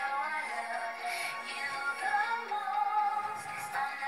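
Pop song with a female lead vocal that sounds electronically processed, singing between lyric lines and holding one long note in the second half.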